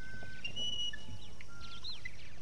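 Birds calling in a forest ambience: a string of short, pure whistled notes at different pitches, one after another, with a quick rising-and-falling whistle near the end, over a steady low background rumble.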